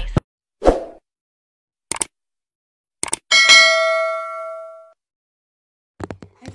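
Video-editing sound effects over dead silence: a short soft thump, a few clicks, then a bell-like ding that rings out and fades over about a second and a half.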